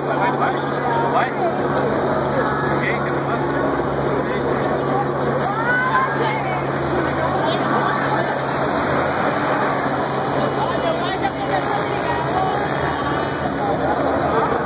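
Crowd of people talking over one another in the street, with a steady low engine hum from buses and traffic beneath.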